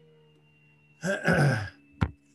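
A man clearing his throat once, about a second in, heard over a video-call microphone.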